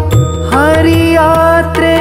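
Male voice singing a Dasara pada devotional song, gliding up into a long held note about half a second in. Under it are a steady low drone and occasional tabla strokes.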